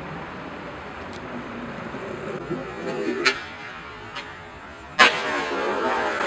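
Outdoor traffic hum, then about five seconds in a sharp clack of a skateboard striking concrete, followed by the rough steady noise of its wheels rolling.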